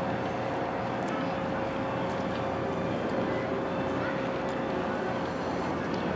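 A passenger cruise boat's engines running, a steady drone with a constant hum over a noisy background.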